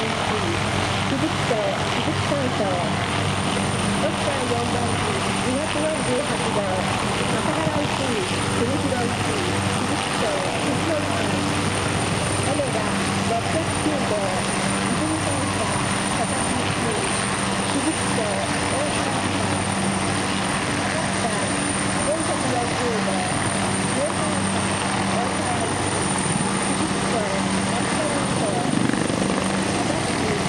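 Military helicopters (an OH-6 light scout, an OH-1 and an AH-64D Apache) flying low and hovering close by, giving a steady rotor and turbine noise with a thin high whine. Spectators' voices chatter underneath.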